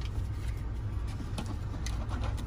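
Steady low rumble of an idling engine heard from inside a tool truck, with a couple of faint light clicks.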